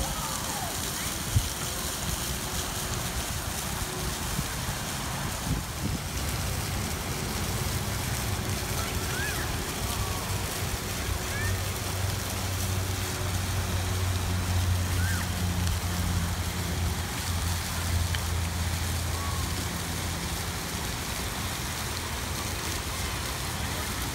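Steady rush of falling water from a pool's rock waterfall and fountain, with a low motor hum from the bumper boats that swells in the middle and faint distant voices. A single sharp knock sounds about a second in.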